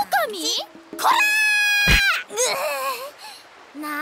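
Voice-acted character exclamations, including a long shrill cry held for about a second that drops in pitch at its end, with a short thud near the middle.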